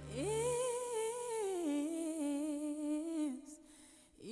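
Background music: a woman's voice sings one long wordless note with vibrato, sliding up at the start and stepping down to a lower held note about halfway, then fading near the end. The low backing chords drop out early, leaving the voice nearly alone.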